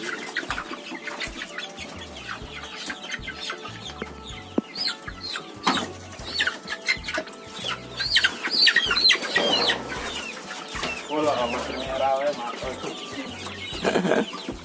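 A cage-full of young white cockerels clucking and squawking as they are grabbed by the legs and lifted out of their box cage for harvest; the calls grow louder and busier from about five seconds in.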